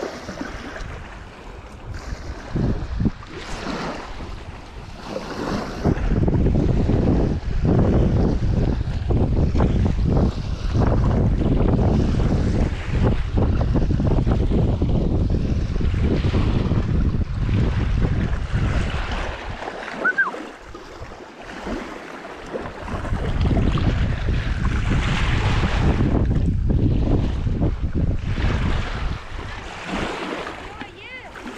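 Gusty wind buffeting the microphone in loud low rushes, with a short lull about two-thirds of the way through, over small waves lapping at the shore.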